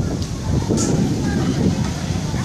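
Engine of a slow-moving van as it creeps past close by, a steady low rumble, with people talking nearby.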